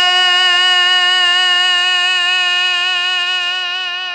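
A man's amplified singing voice holding one long high note of a qasida, steady with a slight waver, slowly fading near the end.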